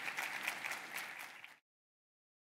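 Audience applauding, a dense patter of many hands clapping that cuts off suddenly about a second and a half in.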